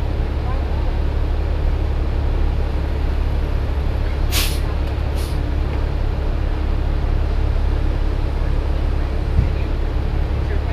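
Neoplan transit bus engine idling with a steady low hum. About four seconds in come two short, sharp hisses of released compressed air, about a second apart, from the bus's air system; a dull knock sounds near the end.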